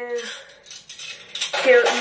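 Cutlery clinking as it is taken out of a dishwasher's top rack: a few light, separate clicks.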